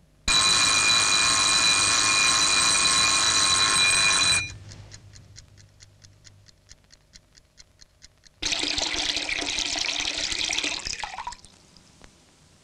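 An alarm clock bell ringing loudly for about four seconds and cutting off abruptly, followed by the clock's rapid, even ticking. About eight seconds in, a basin tap starts running water and is shut off about three seconds later.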